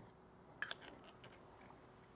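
A stainless steel spoon skimming slag in a small lead melting pot: faint scrapes and one short metallic clink about half a second in, with a few lighter ticks later.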